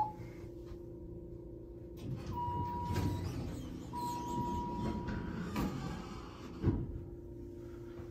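ThyssenKrupp hydraulic elevator car with a steady low hum as its doors slide closed from about two seconds in. During the closing come a short electronic beep and then a longer one, and the doors shut with a thump near the end.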